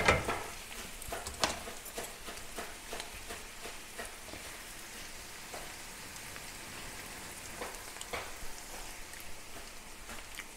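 Crumbled vegan chorizo frying in a pan: a steady faint sizzle with scattered small crackles. At the very start, a spoon and spatula scrape and knock against the pan.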